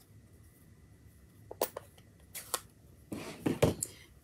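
Light clicks and knocks of stamping supplies being handled on a tabletop, a plastic ink pad case among them. There are a few scattered taps after the first second and a closer run of them near the end.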